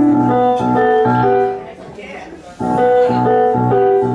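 Electronic keyboard set to a piano sound, playing a repeating phrase of short notes. It drops away for about a second in the middle, then starts again.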